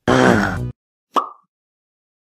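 Two short sound effects out of silence: a loud burst of several tones lasting under a second, then a single short pop about a second in that rings briefly.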